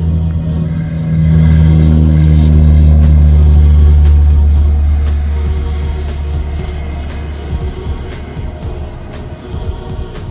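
Music over the steady low drone of the Alpi Pioneer 300's engine at takeoff power. The drone swells about a second in and fades from about five seconds on as the aircraft climbs away.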